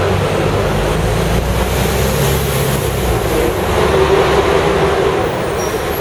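Tour bus in motion, its engine running low and steady under road and street noise, heard from the open upper deck.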